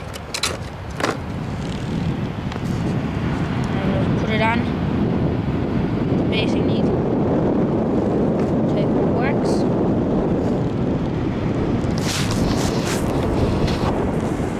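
Steady low rushing of wind buffeting the microphone. It builds over the first couple of seconds and then holds level, with a few faint clicks of handling.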